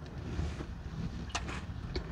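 Wind rumbling on the microphone outdoors, with two small clicks about a second and a half in and near the end as the rider gets off the parked motorcycle.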